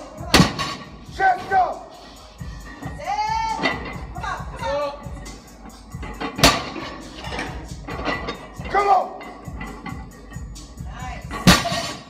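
A heavily loaded barbell with rubber bumper plates is set down hard on the rubber gym floor three times, about six seconds apart, at the end of each heavy conventional deadlift rep. Voiced sounds come in between the impacts.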